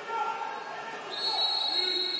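Referee's whistle blowing a long, steady, high blast starting about a second in, signalling a goal in a water polo match, heard in an indoor pool hall.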